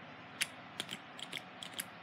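A quiet run of small, sharp, irregular clicks and ticks, about eight in two seconds.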